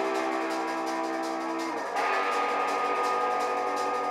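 Live rock band playing: electric guitar and bass holding a sustained chord over drums and cymbals, moving to a new chord about two seconds in.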